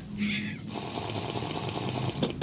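Water running in a steady hiss, starting under a second in.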